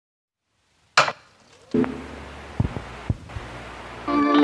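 Handling noises from craft tools: a sharp knock about a second in, then a low steady hum with a few light taps and clicks.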